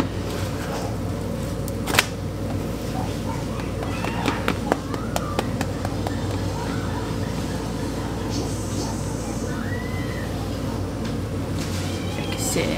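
Spatula knocking and scraping on a frying pan while a pancake is worked in it: one sharp knock about two seconds in, then a few lighter clicks a couple of seconds later, over a steady low hum.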